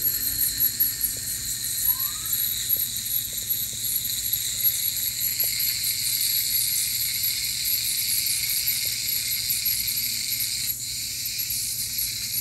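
Ultrasonic dental scaler with its water spray, together with a saliva ejector sucking: a steady high hiss and whine that wavers in loudness as the tip is worked along the teeth, scaling off hardened tartar.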